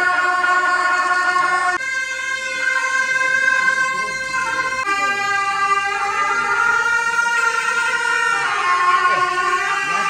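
Tibetan gyaling, the double-reed ceremonial horns of the monastery, playing a slow melody of long held notes. The pitch steps up about two seconds in and shifts again about five and eight and a half seconds in. This is the music that greets a high lama's arrival.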